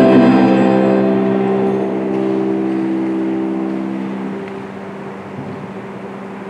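A held musical chord with steady, unwavering notes, fading away over the first four seconds or so as its lowest note lingers faintly, leaving quiet church room tone.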